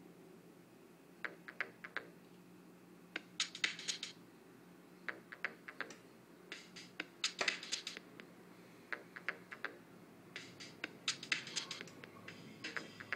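Mixdex Lite sequencer on an iPad starting to play: quiet, short, sharp clicks in irregular clusters of several every second or two, over a faint steady low hum.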